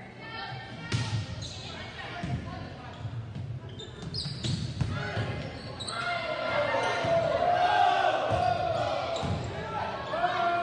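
Indoor volleyball rally in a gymnasium: sharp smacks of the ball being hit, the clearest about a second in and again around five seconds. Spectators' and players' voices grow louder into shouting and cheering in the second half, ringing in the hall.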